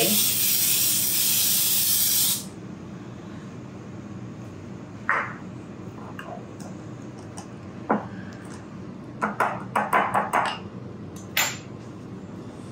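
Aerosol cooking spray hissing steadily onto a waffle iron's plates, cutting off about two seconds in. Later, a scattered series of short, light knocks.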